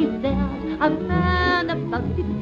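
A music-hall comic song: a woman's voice singing over instrumental accompaniment, holding one note for about half a second a second in.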